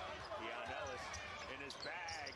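Faint basketball broadcast audio: a basketball being dribbled on a hardwood court under a commentator's voice.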